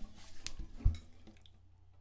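Handling noise from a spruce-and-maple classical guitar being turned over in the hands: a light click about half a second in, then one dull bump near the one-second mark, and quiet after.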